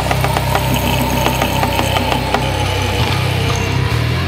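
Hardcore/nu metal band music: heavy guitar, bass and drums playing a riff over a fast, even drum beat.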